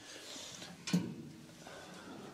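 Faint workshop handling noise as a metal battery box is picked up off the floor, with one sharp knock about a second in.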